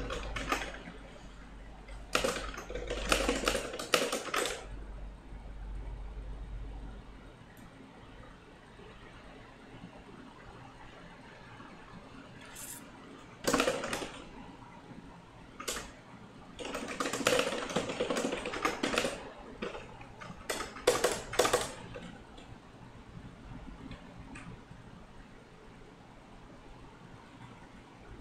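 Computer keyboard typing in several quick bursts of keystrokes, separated by pauses of a few seconds.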